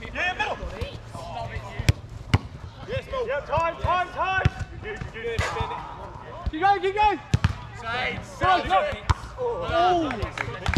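Football players shouting and calling to each other during play, with a few sharp thuds of the ball being kicked, two close together about two seconds in and another past the middle.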